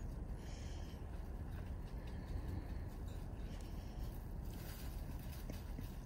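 Quiet background: a steady low rumble with no distinct sounds standing out.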